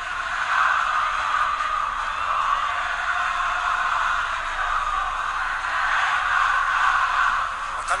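Large crowd of football supporters in a stadium, a dense steady mass of voices.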